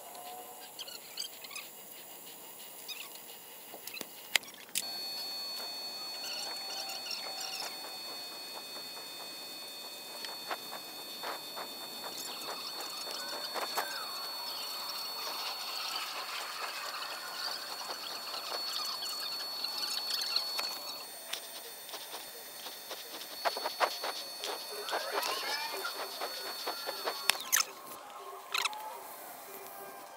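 Shielded metal arc (stick) welding on a steel pipe: the arc crackles steadily under a thin, steady high whine, struck about five seconds in, dipping briefly about two-thirds through, and broken off a few seconds before the end. This is the two-bead cap pass of a pipe weld test.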